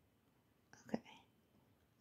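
Near silence: room tone, broken about a second in by one softly spoken, almost whispered word.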